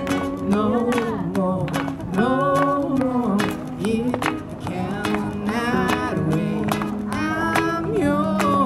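Live acoustic street band playing: strummed acoustic guitar and a second guitar over steady hand-struck cajon beats, with a voice singing the melody.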